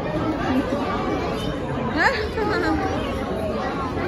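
Indistinct chatter of voices with no clear words, and one brief, high, rising cry about halfway through.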